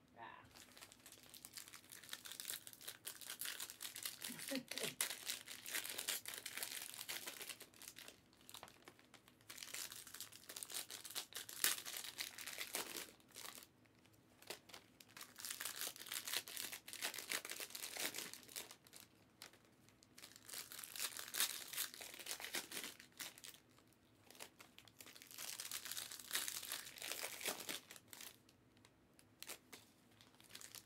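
Foil trading-card pack wrappers, 2023 Panini Prizm WNBA hobby packs, being torn open and crinkled. The crackling comes in about five bouts of a few seconds each, with short pauses between.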